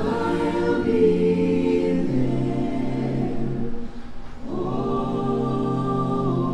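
Mixed-voice a cappella ensemble singing long, sustained harmonized chords through microphones and stage speakers, with a brief break for breath about four seconds in before the next held chord.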